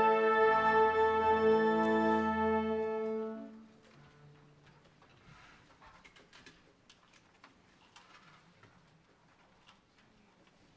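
Concert band of brass, woodwinds and string bass holding a sustained chord that is released about three and a half seconds in and dies away. After that only faint scattered clicks and rustles are left in the hall.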